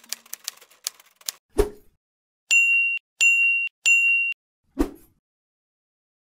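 Typewriter sound effect: a quick run of key clicks ending in a thump, then three short high electronic beeps evenly spaced, and a final thump.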